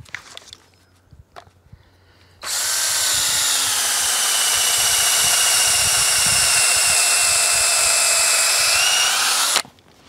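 Cordless drill running an auger bit into a maple trunk: after a couple of quiet seconds with a few faint clicks, the motor starts about two and a half seconds in and runs with a steady whine for about seven seconds, then stops abruptly just before the end. It is boring a hole for a screw-in tree step.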